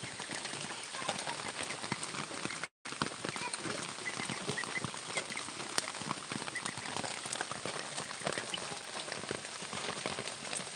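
Steady rain pattering, dense with small drop clicks; the sound cuts out for a moment about three seconds in.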